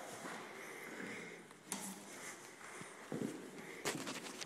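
Quiet indoor room tone with a few soft footsteps on a hard floor.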